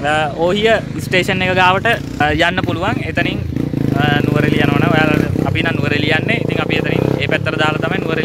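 A man talking, in Sinhala, with a motorcycle engine running steadily underneath from about halfway through.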